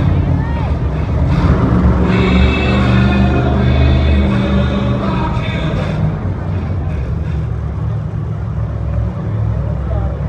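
Monster truck engine running loud and low as the truck drives slowly across the arena floor, easing off somewhat after about six seconds. Arena music and crowd sound run alongside it for the first six seconds.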